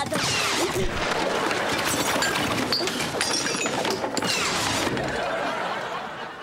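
Super-speed whooshing sound effect mixed with clattering and clinking of tableware, fading near the end.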